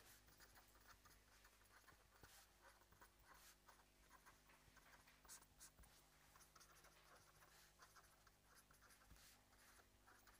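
Near silence, with very faint, irregular scratching of writing by hand over a steady low electrical hum.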